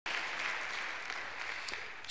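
Congregation applauding in a church sanctuary, a dense steady patter of clapping that slowly dies down.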